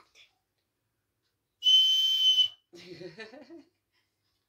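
A small toy whistle blown once, one steady high note with a breathy hiss, lasting just under a second and the loudest thing here.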